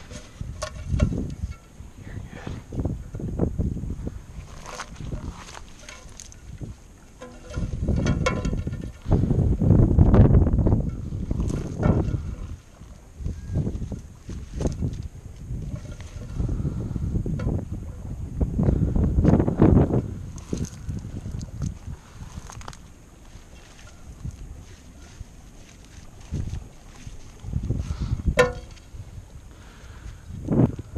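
Footsteps through wet salt-marsh grass and mud, with grass rustling and irregular low thumps. It is loudest in two stretches, about a third and about two-thirds of the way in.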